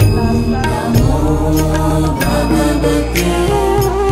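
Hindu devotional music with chanted vocals over a sustained low drone and occasional percussive strikes.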